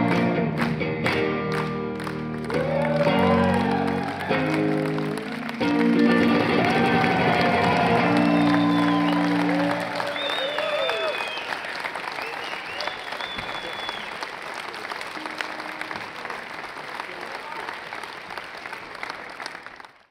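A live rock song with electric guitar ends on a held chord about ten seconds in, and the crowd then applauds and cheers with whoops, the applause fading toward the end.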